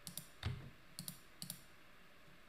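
Computer mouse clicking several times while selecting spreadsheet cells; the clicks are faint, two of them come as quick pairs, and there is a soft low thump about half a second in.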